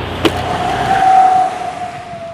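A single steady tone that fades in, is loudest just past the middle and dips slightly in pitch as it fades, over outdoor background noise, with a short click about a quarter second in.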